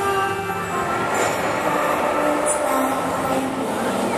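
Steady rushing hiss of the show's fountain jets and mist sprays. The orchestral music fades under it during the first second, with a few notes still faintly audible.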